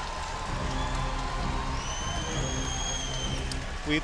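Music with steady low bass notes over a crowd's background noise; a held high note sounds through the middle.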